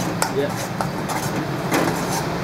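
Spoon stirring melting palm sugar into caramel in a steel wok, with a few light clicks of the spoon against the pan.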